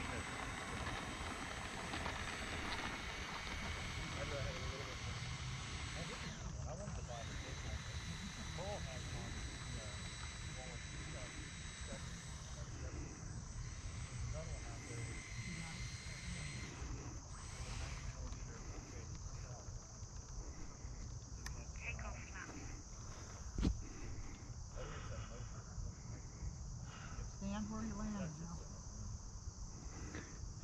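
Steady high-pitched chirring of an insect chorus, with faint murmuring voices and one sharp click about two-thirds of the way through.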